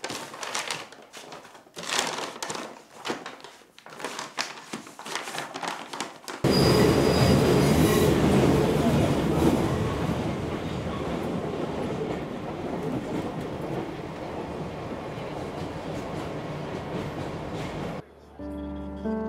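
Scattered knocks and rubbing as objects are handled, then, suddenly, the loud steady rumble and rattle of a metro train running, heard from inside the carriage, with a brief high wheel squeal soon after it starts; the rumble eases off gradually.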